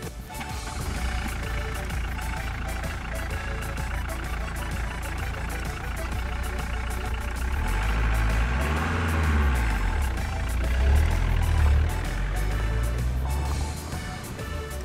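A Volkswagen Golf III driving off along a gravel road, its engine a steady low rumble that rises and falls as the car passes close by about eight to nine seconds in, with music playing over it.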